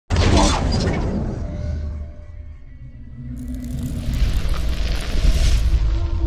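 Cinematic intro sound effect: a sudden deep boom with a crackling burst at the start that dies away over a couple of seconds, then a second rush of noise that swells up over a low rumble near the end.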